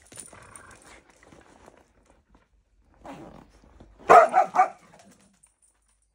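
A dog barks three times in quick succession, about four seconds in; these short, sharp barks are the loudest sound.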